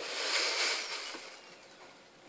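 Rustling of folded fabric and its white wrapping being picked up and handled. The rustle swells in the first second and fades away toward the end.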